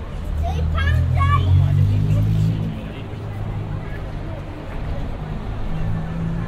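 Busy city street: a road vehicle's engine hums low, loudest and rising in pitch through the first half, then settles into steady traffic noise, with passers-by talking nearby.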